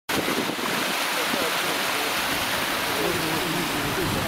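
Water rushing steadily through a breach washed out in an earthen pond dam: the dam is leaking and the pond is draining through the gap.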